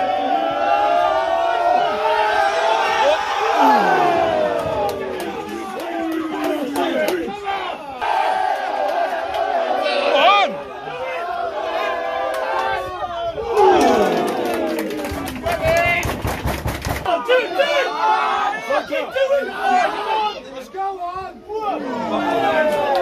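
Football crowd chanting and shouting, many voices at once, with a sudden louder collective shout and a run of sharp claps about fourteen seconds in.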